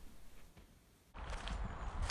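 Very quiet for about a second, then outdoor sound cuts in suddenly: a person's footsteps on a trail, with a low rumble on the microphone.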